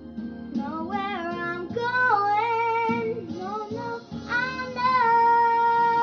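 A young girl singing a song over guitar accompaniment, sliding between notes and then holding one long note over the last couple of seconds.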